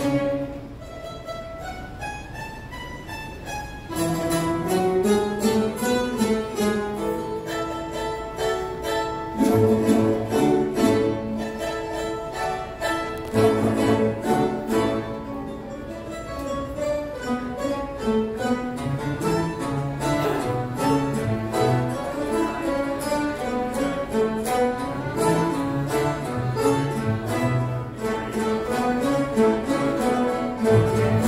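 Tamburitza orchestra of plucked tambura-family string instruments with a string bass, playing live. A single melodic line climbs alone for the first few seconds, then the full ensemble comes in about four seconds in.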